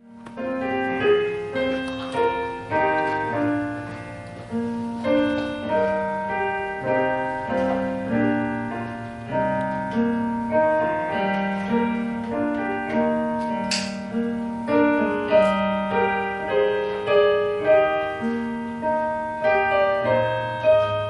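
Piano playing a slow, steady piece, melody notes and chords struck in an even rhythm, each one ringing and fading.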